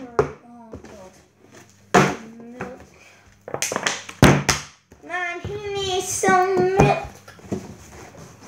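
A plastic milk bottle and a juice carton are being flipped and knocking down onto a table: about five sharp knocks in the first half. A child's voice follows with a drawn-out call in the second half.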